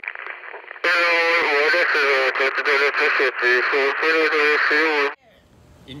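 A loud, pitched voice with a radio-like, band-limited sound, starting about a second in and cutting off suddenly about five seconds in.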